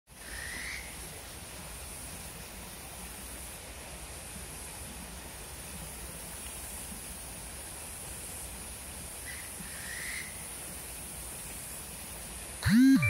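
Outdoor natural ambience in dense vegetation: a steady high-pitched insect chorus. Two short calls stand out, one near the start and another about nine seconds in.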